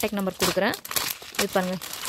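Clear plastic packets holding jewellery sets crinkling and rustling as they are handled, with a voice talking over it.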